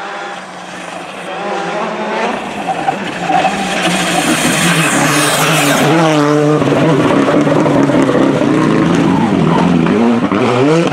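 Hyundai i20 R5 rally car, its 1.6-litre turbocharged four-cylinder engine, approaching at speed and growing louder. It passes close at full throttle about five to six seconds in, with the engine note dipping and rising as it goes by.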